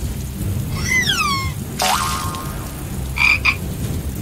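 Cartoon frogs croaking over steady rain: a falling call about a second in, another about two seconds in, and a short croak near the end.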